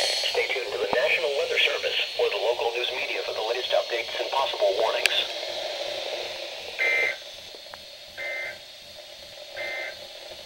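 A NOAA weather radio's synthesized voice finishes a Winter Storm Watch message through the radios' small speakers. Then come three short, shrill data bursts about a second and a half apart: the EAS end-of-message code that closes the alert.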